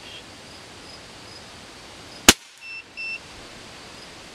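A single shot from a .22 calibre PCP air rifle, a sharp crack, followed by two short high beeps from the chronograph as it registers the pellet's speed.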